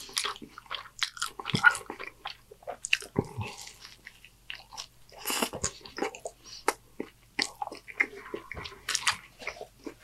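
Close-miked chewing and crunching of a taco: dense, irregular crackles and wet mouth sounds.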